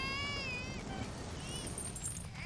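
A high, wavering cry, about a second long, with fainter short cries around it, over a low steady rumble.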